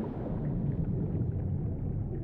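A low, steady underwater rumble with no distinct events in it.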